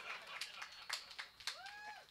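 Faint room noise with a few quiet clicks, then one short high-pitched vocal sound about one and a half seconds in.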